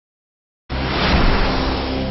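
A logo-intro sound effect: a loud rushing whoosh that starts suddenly a little over half a second in, after silence, and carries on steadily.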